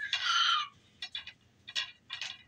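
An infant's short, high-pitched squeal that falls slightly in pitch, followed by a few sharp clacks of wooden beads and pieces on a bead-maze activity cube as he plays with it.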